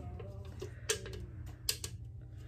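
A few sharp clicks and taps from small objects being handled, three of them close together in the second half, over a steady low hum.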